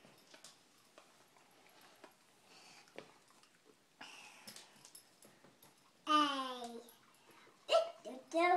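Quiet room with faint scattered taps, then about six seconds in a single loud vocal cry, under a second long, falling in pitch, and a brief vocal burst near the end.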